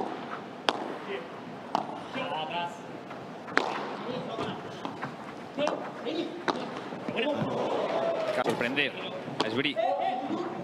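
Padel rally: the ball struck by padel rackets and bouncing off the court and glass walls, a sharp pop every second or two with the loudest a little over a third of the way in, over a murmur of voices.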